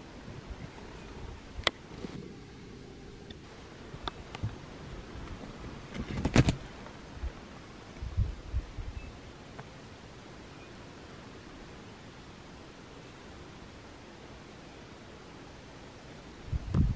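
Steady low outdoor background noise with a few scattered knocks and thumps, the loudest about six seconds in, then an even hush for the second half.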